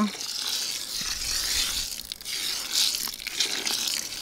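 Water poured in a thin stream from a plastic cup into a plastic bucket of dry seed, trickling steadily onto the seeds to wet them for inoculation.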